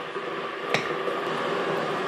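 Electric kettle heating up with a steady noise. About three quarters of a second in, a single sharp click as the big knife cuts through the rocky road and hits the dish.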